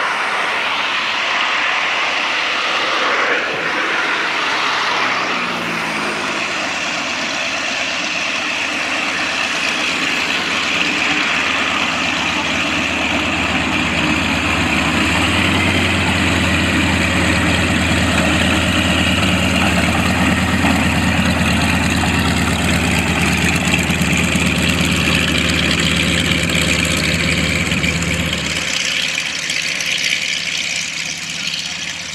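Propeller aircraft's piston engine running at taxi idle. The sound is steady and grows louder and deeper about halfway through as the plane comes closer. The low drone drops off abruptly near the end.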